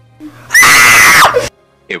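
A person's high-pitched scream, very loud, held for about a second before the pitch drops and it cuts off suddenly. It is a flustered, embarrassed shriek.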